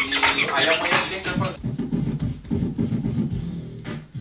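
A vinyl record is scratched by hand on a DJ turntable over music, with quick back-and-forth sweeps. The scratching is densest in the first second and a half, after which the music plays on more softly.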